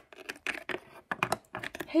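Small plastic toy figurine tapped along a hard surface by hand, giving a quick irregular run of light clicks.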